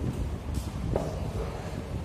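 Low steady rumble with two light knocks, about half a second and one second in, as hands handle the acrylic chloride-permeability test cell while its bolts are tightened.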